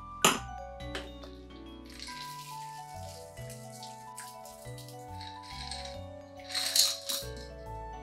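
A cocktail is strained from a metal shaker into a glass: a soft trickle of liquid, then ice rattling in the shaker about seven seconds in. Background music with sustained notes plays throughout.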